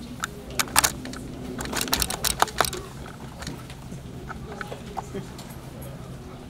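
A quick, irregular run of sharp clicks and taps, densest in the first three seconds and thinning out after, over a brief laugh and faint low voices.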